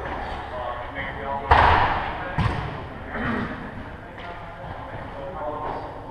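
Football kicked hard about a second and a half in, followed by a second thud just under a second later, both ringing in the hall, with players' voices calling.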